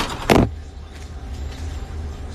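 Handling noise on a phone's microphone as it is moved: a loud scrape or knock right at the start, then a low steady rumble.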